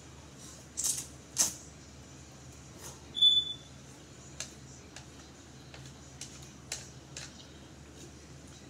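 Close-up eating sounds of ramen noodles: two sharp slurps about a second in, then scattered light clicks of wooden chopsticks against a plastic tray. A short high-pitched tone sounds near the middle, the loudest moment.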